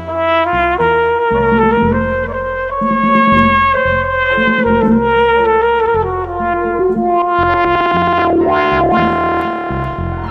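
Live jazz band: a flugelhorn plays the melody in held notes over piano, drums and bass, with a fast wavering flurry about eight seconds in.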